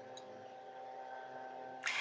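Faint steady hum: room tone with no other distinct sound.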